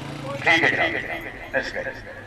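A horse whinnying: one loud, high call about half a second in that lasts around a second and then trails off.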